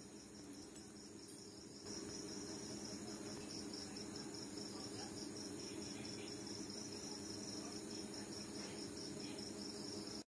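Crickets chirping in a steady, pulsing high trill that gets louder about two seconds in, over a low steady hum.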